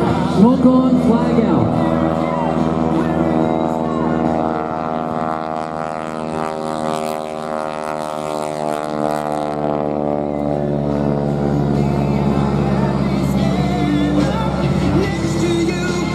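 Radial engine and propeller of a Stearman biplane droning steadily as it flies a low pass, with music playing underneath.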